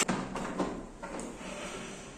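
The plastic case of a Yamaha PSR-730 keyboard knocking and sliding on a wooden table as it is turned over. A knock at the start, then scraping that fades over the next second or so.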